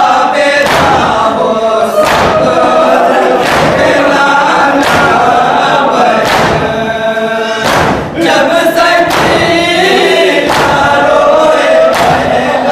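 Men's voices chanting a nauha (Muharram lament) together, with matam, the crowd's hand-strikes on their chests, landing in unison about every second and a half.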